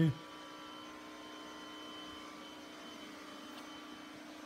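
Steady electrical hum with a few faint, unchanging higher tones over quiet room tone.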